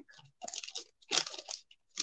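Folded paper crinkling in a few short, irregular crackles, the loudest a little past a second in, as hands pull back the fan-folded top of a paper gift box.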